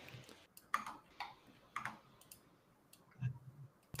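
Faint, scattered clicking at a computer, a handful of separate clicks in the first couple of seconds, then a short soft low sound a little after three seconds.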